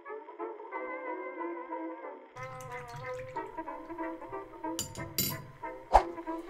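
Instrumental background music: a melody of held, wavering notes, joined by a low bass part about two and a half seconds in. A few sharp clicks come near the end, the loudest just before it stops.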